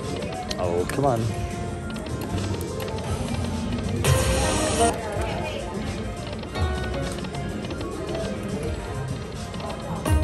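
Slot machine game sounds: an Aristocrat Dragon Link 'Autumn Moon' machine playing its reel-spin tones and melodic jingles as the reels spin. A short hissing burst sounds about four seconds in.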